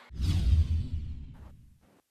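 A whoosh transition sound effect with a deep rumble under it, swelling just after the start and fading away over about a second and a half.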